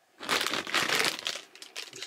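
Plastic Starburst Swirlers candy bag crinkling as it is picked up and handled, a dense crackle that starts just after the beginning and stops shortly before the end.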